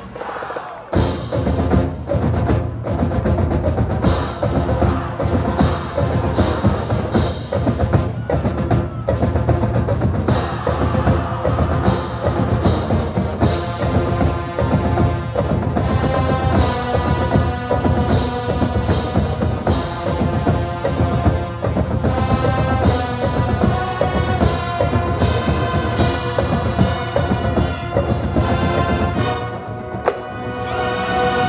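College marching band playing, its drums and percussion to the fore, with held brass chords growing fuller from about halfway through.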